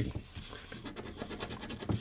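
A coin scratching the latex coating off a lottery scratch-off ticket: a quick run of soft, rapid rasping strokes.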